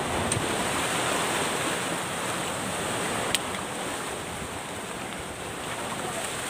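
Surf washing on a rocky, pebbly shore with wind on the microphone: a steady rush of noise, with a single sharp click about three seconds in.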